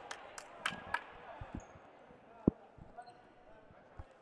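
A few dull thuds of dodgeballs bouncing on a hardwood gym floor, the loudest one about two and a half seconds in, with some sharp clicks in the first second.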